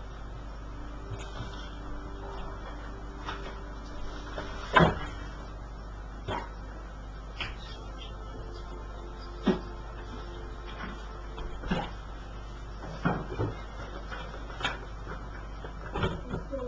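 Scattered, irregular knocks and clicks over a low steady room hum, the loudest about five seconds in.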